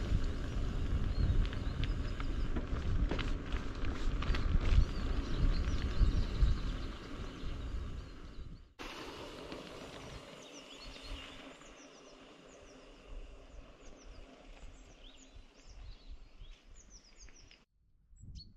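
Riding noise from a bicycle on a forest track, a loud low rumble of wind and tyres on the microphone that cuts off suddenly about nine seconds in. After that, quiet open air with small birds chirping repeatedly.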